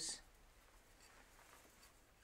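Faint rustling of a knitted wool shawl being handled and spread out by hand.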